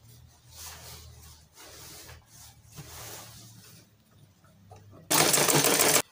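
Butterfly sewing machine stitching fabric. It runs softly and unevenly for the first few seconds, then gives a loud, fast rattle for about the last second, which stops suddenly.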